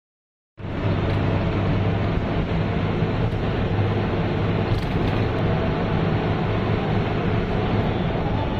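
A bus's diesel engine running steadily under way, heard from inside the driver's cab with road noise.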